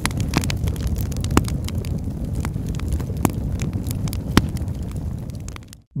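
Fire sound effect: a steady low rumble with a few sharp crackles, fading out just before the end.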